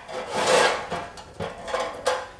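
A plastic mixing bowl full of cake batter being handled and scraped, with its spatula in it. The longest rubbing scrape comes about half a second in, followed by shorter scrapes.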